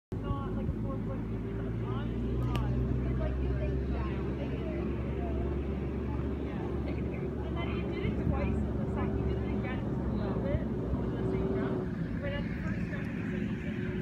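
An engine running steadily with a low hum, under faint scattered voices.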